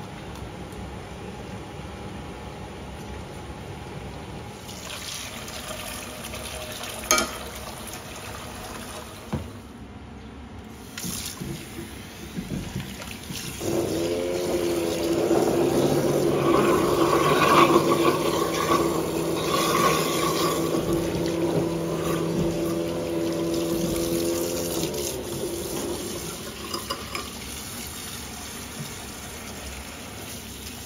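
Kitchen tap running into a rice cooker's inner pot in a stainless steel sink to rinse rice. The water comes on strongly about halfway through with a steady ringing note, then eases to a quieter flow for the last few seconds. A few sharp knocks come before the water starts.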